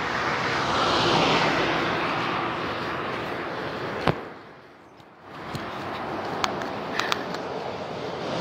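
Road traffic passing: a steady rush of tyre and engine noise that swells early on, fades to a brief lull a little past the middle, then builds again. A sharp click about four seconds in.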